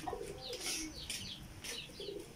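Birds chirping in short, quick falling notes, with a faint low cooing underneath; all quiet.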